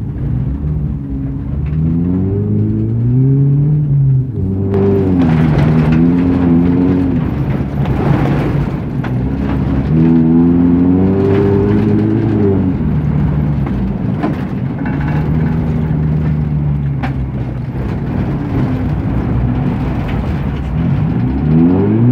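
BMW 318's four-cylinder engine, heard from inside the cabin, revving up and easing off again and again as the car is driven hard on snow and ice. A loud rushing noise joins it from about five seconds in for a few seconds.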